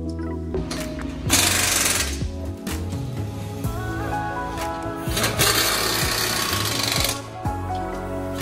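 A power wrench runs in two bursts, the first short one just over a second in and a longer one of about two seconds from about five seconds in, over background music.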